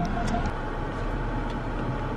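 Steady cabin noise of a Hyundai Azera sitting with its engine idling, with a couple of faint clicks about half a second in.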